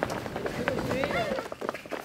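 Children running, with quick scattered footsteps, and a child's voice calling out briefly about a second in.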